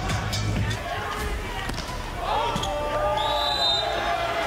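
Volleyball arena sound at the end of a rally: the ball hits the court, and the crowd shouts over arena music. A short, high, steady whistle blast comes about three seconds in.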